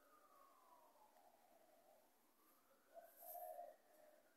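Faint distant siren wailing slowly, its pitch falling and then rising again, with a short louder burst of noise about three seconds in.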